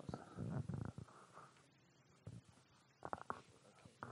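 Faint, muffled rumbling and knocking from a handheld microphone being handled, loudest in the first second. A few short knocks come about three seconds in, with quiet room sound between.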